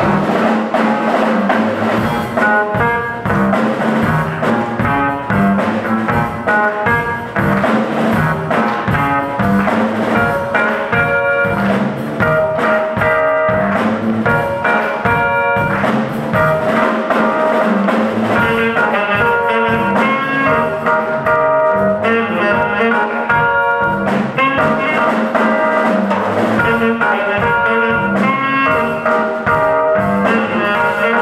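Saxophone playing a jazzy melody with long held notes over electronic keyboard accompaniment and a drum beat.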